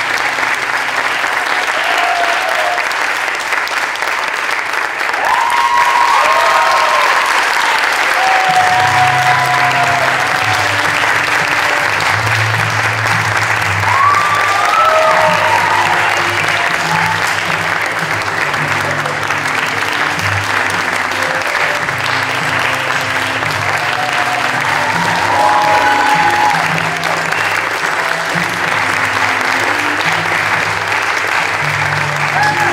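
Theatre audience applauding steadily through a curtain call, with music coming in underneath about eight seconds in.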